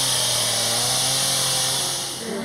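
Two-stroke chainsaw running steadily at high revs as it cuts through a fallen tree trunk, fading out near the end.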